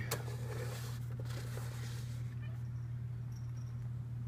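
A steady low hum, with faint rustling and a couple of light clicks, about a second apart, from the camera being handled.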